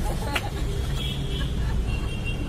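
Street traffic rumbling steadily in the background, with a single sharp click about a third of a second in and faint voices.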